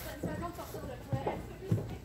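Indistinct voices of a group of people chatting, with footsteps on a wooden ramp.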